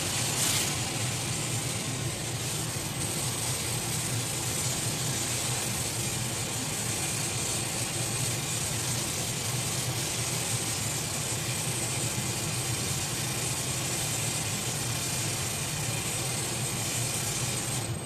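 Gas torch flames burning with a steady, even hiss and low rumble while heating glass being sculpted on a rod.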